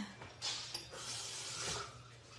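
A soft, even hiss that starts about half a second in and fades out near the end, over a faint steady low hum.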